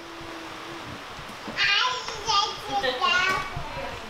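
Speech only: a high-pitched voice, like a child's, talking among the guests for a couple of seconds from about a second and a half in.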